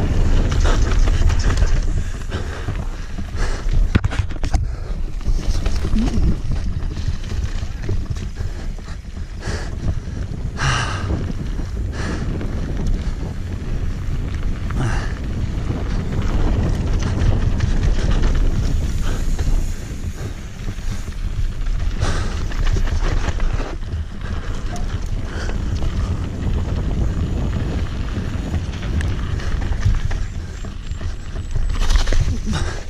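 Mountain bike riding fast down a rocky dirt trail: wind buffeting the camera microphone over tyres rolling on dirt, with frequent knocks and rattles from the bike over rocks and roots.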